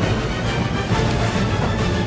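Background music with a steady, dense sound.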